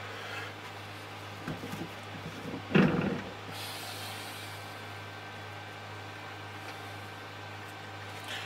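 Build plate of a resin 3D printer being unfastened and lifted off its arm by hand: a soft knock a little after a second in, then a short clatter about three seconds in, over a steady low hum.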